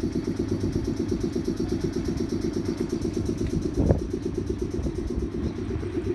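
A JR 719 series electric train standing at the platform, with its underfloor air compressor running in a steady, rapid chugging pulse. A single short thump comes about four seconds in.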